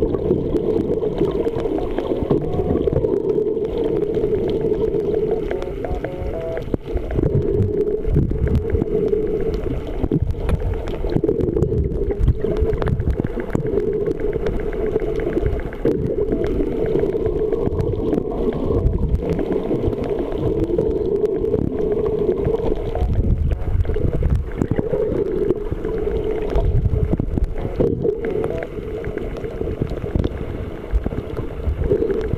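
Muffled underwater sound from a camera submerged in the sea: a steady low rumble of moving water with irregular low pulses and some bubbling.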